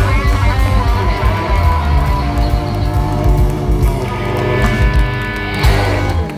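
Live electric blues band playing: overdriven electric guitars over bass and drums, with a loud full-band hit near the end.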